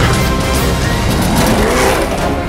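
Off-road race vehicle engine running hard as it passes close at speed, mixed with loud background music.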